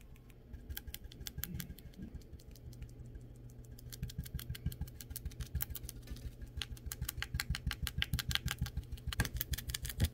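A stiff-bristled brush dabbing thick purple paint onto a textured canvas in quick, repeated taps. The taps are sparse at first, then about halfway through come faster, roughly five a second, and louder.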